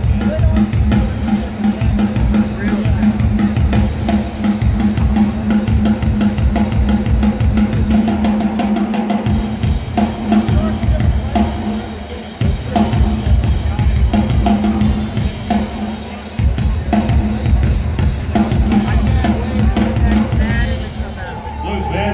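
Loud drum-kit playing with kick, snare and cymbals, heard over an arena's sound system. The rhythm of hits runs steadily, with a few brief breaks.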